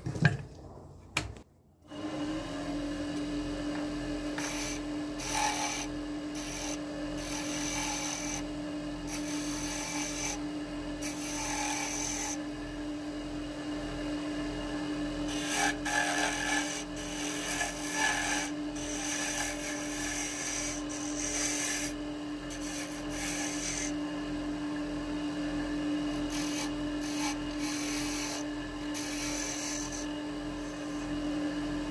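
Wood lathe motor starting about two seconds in and then running with a steady hum, while a turning tool cuts a spinning wooden pen blank on its mandrel in repeated scraping passes. This is the final light rounding of the pen blank before sanding.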